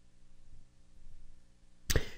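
Faint steady low hum of the recording, with a sudden short sharp sound near the end.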